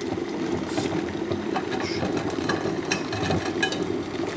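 A steady low mechanical hum, like a small motor or fan running, with scattered light clicks.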